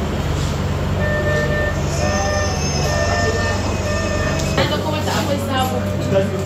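Hospital ward sound: a steady low machine hum with an electronic beep repeating about once a second from medical equipment, which stops about four and a half seconds in, followed by voices.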